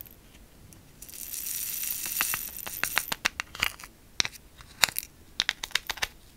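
Tiny crystal rhinestones are poured from a plastic triangle tray into a small plastic jar. They hiss as they slide off for about two seconds, then come a run of light, separate clicks as the last stones drop in.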